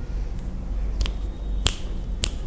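Finger snaps: two sharp snaps about a second in, a little over half a second apart, keeping time as a countdown that limits a player's turn.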